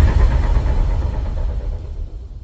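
Deep low rumbling sound effect fading away slowly, the decaying tail of a trailer-style boom.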